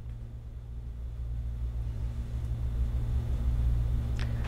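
Steady low hum of room background noise, with no speech, slowly growing louder.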